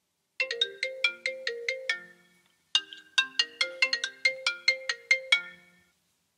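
Mobile phone ringing: a ringtone melody of short, quickly fading struck notes, played as two phrases with a brief gap about two and a half seconds in.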